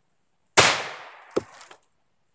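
A .45 ACP gunshot hitting an aerosol can, the burst can's contents rushing out in a hiss that fades over most of a second. A second sharp crack follows a little under a second later.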